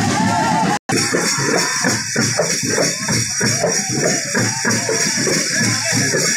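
Live folk music played by hand drums in a steady driving rhythm, with a wavering melody line at the start. The sound cuts out completely for a moment a little under a second in, then the drumming carries on.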